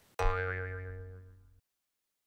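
Edited-in transition sound effect: a single pitched note with a slight wobble. It starts suddenly, fades over about a second and a half, then cuts off to dead silence.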